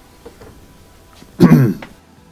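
A man clears his throat once, a short, loud, voiced rasp near the end.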